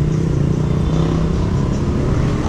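A vehicle engine running steadily with a low, even hum, amid street traffic noise.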